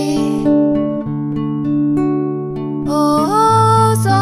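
Nylon-string silent guitar playing a chordal accompaniment, with a woman singing at the start and again from about three seconds in; in between the guitar plays alone.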